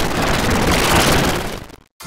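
A loud burst of rushing noise, like heavy static, with no tune in it, dropping out abruptly near the end.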